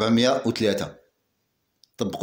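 A man speaking Moroccan Arabic for about a second, then a pause of near silence broken by one faint click near the end.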